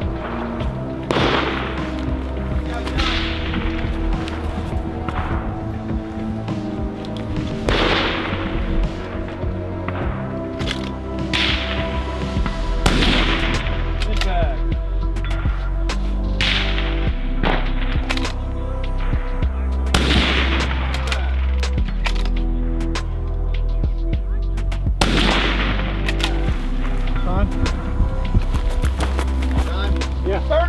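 Background music with a steady bass line over centerfire precision rifle shots, about ten of them a few seconds apart, each with a short echo.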